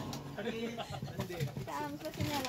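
Faint chatter of a few people talking quietly in the background.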